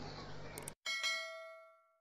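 Two quick clicks over faint hiss, then the hiss cuts off and a single bell ding sound effect rings out about a second in, fading away over most of a second. It is the notification-bell sound of a subscribe-button animation.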